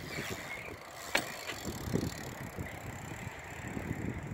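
BMX bike tyres rolling over a concrete skatepark bowl, with a sharp click about a second in.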